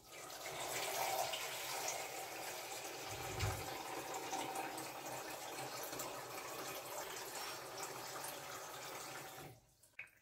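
Kitchen mixer tap running steadily into the top reservoir of a plastic Brita filter jug, filling it with tap water. There is a dull low bump about three seconds in, and the water sound stops abruptly near the end.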